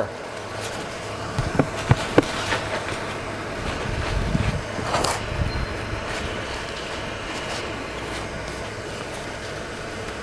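Handling noise from a handheld camera being carried on the move: a few sharp clicks about one and a half to two seconds in, then low thumps around the middle, over a steady low hum.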